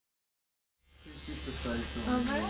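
Silent at first, then about a second in electric hair clippers start buzzing with a steady low hum as they work on the hair at the back of the neck. Voices come in over the buzz near the end.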